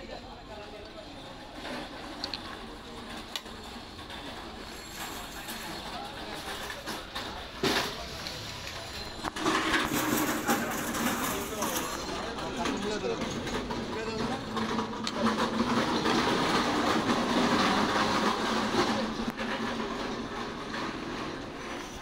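Busy street noise with voices in the background, growing louder about halfway through, with one sharp knock shortly before.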